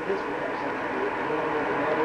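Indistinct voices talking in a room over a steady background hiss.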